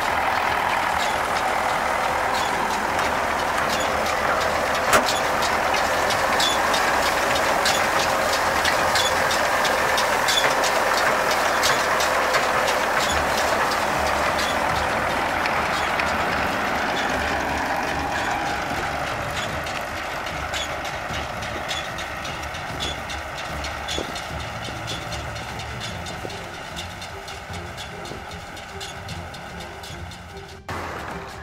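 A tractor engine running and driving a Claas Rollant 46 round baler, a steady mechanical run with many irregular sharp metallic clicks and knocks through it. The sound fades out gradually over roughly the last ten seconds.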